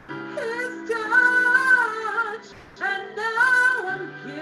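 A woman singing a slow gospel solo over a sustained accompaniment. She sings two long-held phrases with a short breath between them, about two and a half seconds in.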